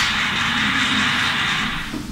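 A loud, steady hiss with no words over it, cutting off suddenly near the end.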